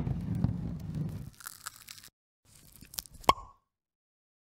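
Sound effect of a watermelon being split. A sharp crack opens it, followed by about a second and a half of wet crunching and crackling that fades away. Near the end come a few small cracks and one sharp pop with a short ring.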